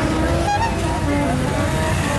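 A vintage-style car's engine running steadily as the car rolls slowly past, with a crowd's voices mixed in.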